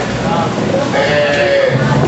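A voice through the PA at a live hardcore metal show, wavering in pitch, over the noise of the band's amplifiers on stage; a steady low hum-like note comes in near the end.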